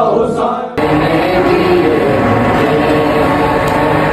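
Unaccompanied male voices chanting a noha, a Shia lament. Less than a second in, the sound cuts abruptly to another, noisier recording of group chanting.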